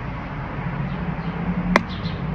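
A steady low hum in the background, with one sharp click near the end from hands working the telescope's eyepiece and focuser.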